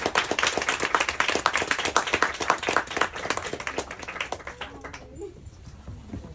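Audience applause that thins out and dies away about five seconds in.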